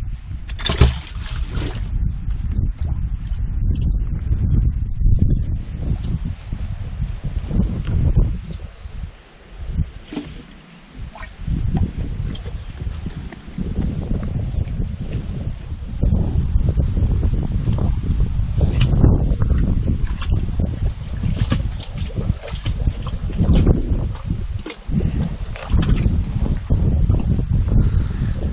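Wind buffeting the microphone in a fluctuating low rumble, with scraping and clicking as a rope is hauled hand over hand up out of a well over its concrete rim.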